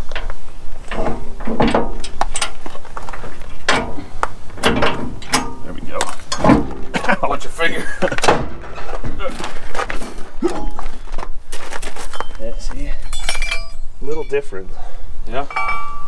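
Irregular metal clanks, knocks and clinks of steel trailer-hitch parts being handled: a wrench on the truck's hitch receiver and steel drop ball mounts knocked together.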